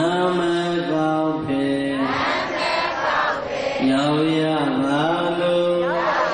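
A man's voice chanting in long, melodic held notes that glide from one pitch to the next, over music, in the manner of Buddhist devotional chanting.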